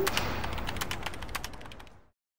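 Rapid, irregular clatter of keyboard typing over a low rumble, fading away to silence at the end.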